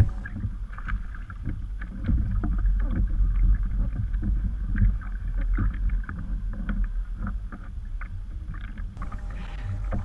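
Small waves lapping and slapping against a kayak hull in irregular little splashes, over a steady low rumble of wind on the microphone.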